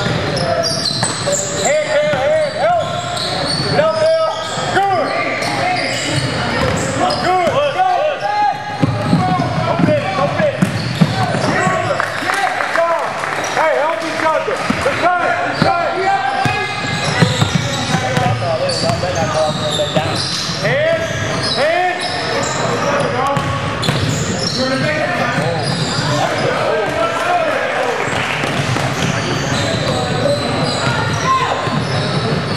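Game sounds echoing in a large gym: a basketball dribbling on the hardwood floor, with many short, sharp sneaker squeaks and indistinct shouts from players and onlookers.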